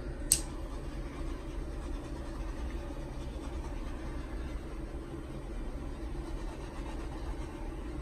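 Small handheld torch running with a steady hiss as it is passed over wet acrylic paint to pop surface bubbles. There is one sharp click shortly after the start.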